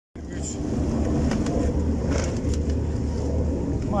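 Small fishing boat's outboard motor running with a steady low rumble, faint voices in the background.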